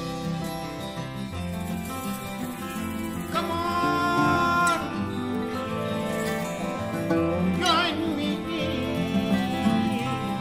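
Band music: acoustic guitar, bass and drums with a man singing, the voice holding long, wavering notes twice.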